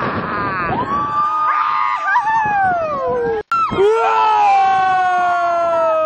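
Riders screaming on a swinging pirate ship ride, with several voices overlapping in long held screams that slide down in pitch as the ship swings. The sound drops out for an instant just past halfway.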